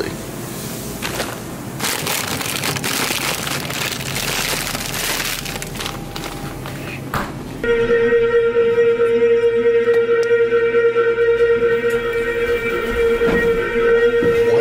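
Elevator noise: a loud, steady droning tone at one pitch with higher overtones starts abruptly about halfway through and keeps going, strange enough to make the rider ask if he is going to die. Before it there is only a noisy hiss.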